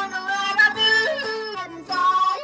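A voice yodeling: loud, wordless held notes with sudden leaps up and down in pitch, over music with a low steady accompaniment.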